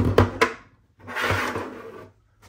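Three quick knocks as a portable monitor on its kickstand is handled and set down on a desk, followed about a second later by a second-long swell of hissing, rustling noise.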